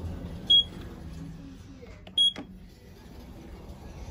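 Short high electronic beeps from a Mitsubishi lift's car operating panel, twice about a second and a half apart, as floor buttons are pressed, over a low steady hum.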